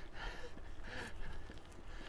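A cyclist breathing hard after a steep climb, a few breaths under a second apart, over a low rumble of wind on the microphone and bicycle tyres rolling on a gravel path.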